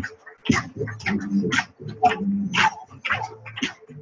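People's voices close to the microphone, talking indistinctly in short bursts.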